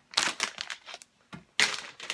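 Clear plastic snack bag crinkling as it is handled, in two spells with a short lull around the middle.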